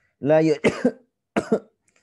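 A man coughing twice, two short sharp coughs under a second apart.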